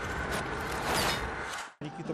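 Swelling noise whoosh of a broadcast title transition, peaking about halfway through and cutting off suddenly near the end.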